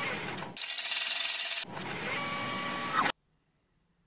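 Noisy, whirring transition sound effect with a brighter hiss lasting about a second in the middle. It cuts off suddenly about three seconds in.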